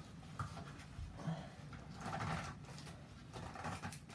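Faint, intermittent rustling, scraping and light knocks of a large cardboard box being handled as its tight top flaps are worked open.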